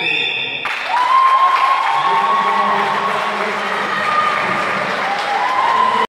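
Crowd in a sports hall applauding, with held cheering shouts over the clapping, greeting the judges' flag decision at the end of a karate bout. The clapping starts under a second in and keeps up steadily.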